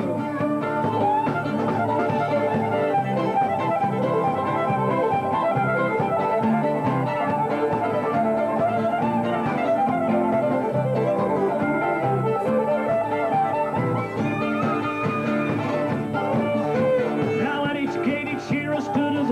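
Instrumental break of a live acoustic bush band: a fiddle carries the tune over strummed acoustic guitar and other plucked strings, in a lively country-folk style.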